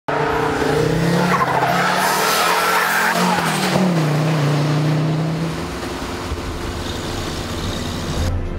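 Car engine running hard, its pitch wavering up and down, with tyres squealing through the first few seconds. The engine settles and grows quieter after about five seconds.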